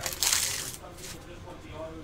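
Foil pack wrapper crinkling in the hand: one short, sharp burst about a quarter second in that fades within half a second.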